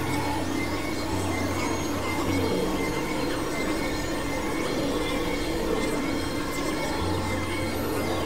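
Experimental electronic drone music: a dense, noisy synthesizer texture with steady tones held throughout. A low hum drops out about two and a half seconds in and returns near the end.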